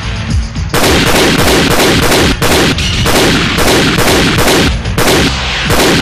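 Rapid gunfire from a film soundtrack, a string of sharp shots several a second, starting just under a second in, over loud dramatic background music.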